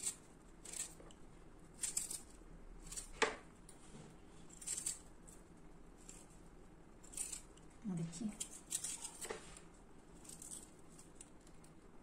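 A kitchen knife cutting through firm, peeled raw mango flesh and scraping along the stone, a series of short cutting strokes at irregular intervals.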